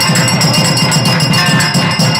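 Temple percussion for an arati lamp offering: a drum beaten in a fast, even rhythm, about six strokes a second, under bells ringing continuously.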